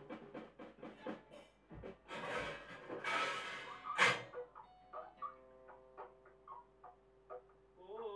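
Band playing quietly in a small room. Evenly paced plucked notes come first, then a couple of hissing swells and a sharp loud hit about four seconds in. A soft chord is held through the last few seconds.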